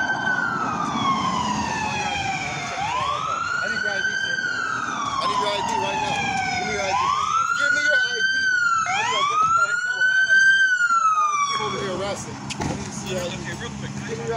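Police car siren wailing, its pitch rising quickly and falling slowly over about four cycles, then stopping about twelve seconds in.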